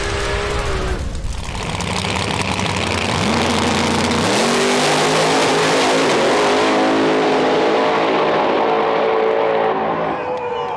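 Race car engine revving: the pitch climbs sharply about three to four seconds in, then holds high and steady with a harsh rasp before easing off near the end.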